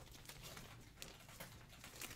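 Near silence with a few faint clicks and rustles from cardboard card packaging and plastic sleeves being handled.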